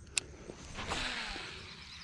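A sharp click, then a baitcasting reel's spool whirring as the frog lure is cast and line pays out, fading away as the spool slows.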